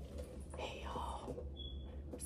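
A person whispering faintly for about a second, starting about half a second in, over a steady low hum.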